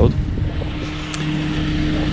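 A motor vehicle's engine running close by: a steady low hum with a faint droning tone over a low rumble. There is a faint click a little past the middle.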